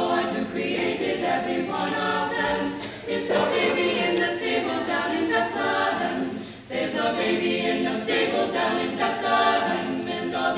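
A mixed high school choir of boys and girls singing, with a brief breath between phrases about two-thirds of the way through.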